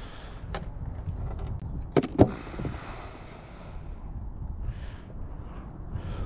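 Low rumble of wind and handling noise on the microphone, with two sharp clicks close together about two seconds in.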